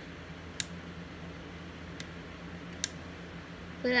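Steady low hum of an electric fan, with three short sharp clicks spread across it, the first and last the loudest.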